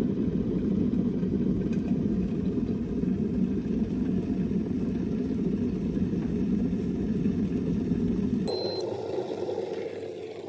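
Stainless-steel electric kettle with a temperature display heating water to the boil with a steady low rumble. About eight and a half seconds in, the rumble stops suddenly and a short high beep sounds as the kettle reaches 100° and switches off.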